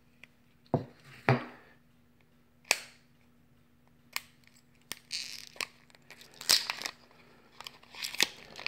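Plastic heat-shrink wrap being peeled and torn off an 18650 lithium-ion battery by hand, the old wrap coming off before the cell is rewrapped. It makes an irregular string of sharp cracks and short crinkling rustles.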